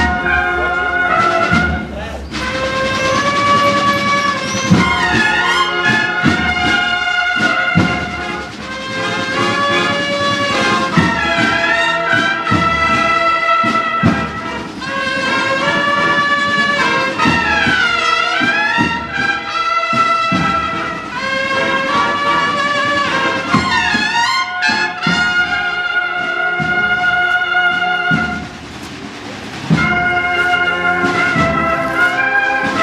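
A brass band plays a slow processional march: trumpets and trombones hold long melodic notes over regular drum beats, with a brief lull near the end.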